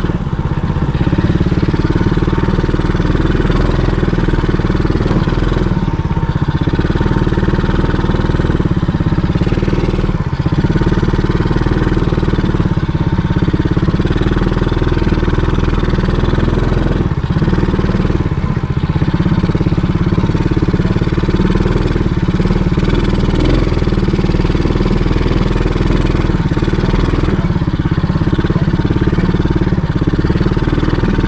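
A quad bike's (ATV's) engine running steadily while the machine is ridden along, heard close up from the rider's seat.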